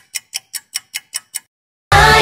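Clock-style ticking sound effect, about five even ticks a second, counting down the answer time for a quiz question; it stops shortly before the end, and music cuts in right at the end.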